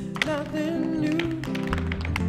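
Tap shoes striking a stage floor in sharp, scattered taps over a slow song with a singing voice.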